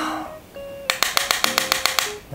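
A rapid run of about ten light clicks starting about a second in: a makeup brush tapped against the edge of a powder highlight palette compact to knock off excess powder. Guitar background music plays underneath.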